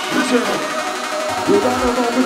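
UK hardcore dance music from a live DJ mix, in a breakdown: the kick drum drops out while pitched synth lines slide up and down, and a fast beat comes back in near the end.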